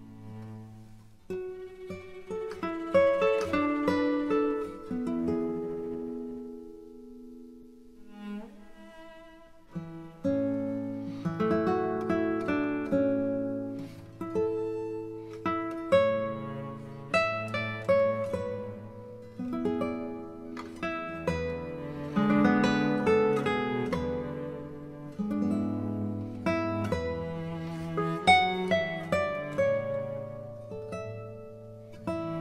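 Instrumental background music on string instruments: a melody of struck notes that ring and fade over lower held notes, thinning out briefly about eight seconds in.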